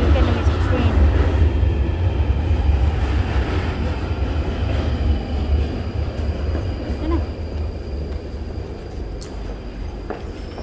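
Underground train rumbling deep and low through the station, loudest about a second in, then slowly fading away.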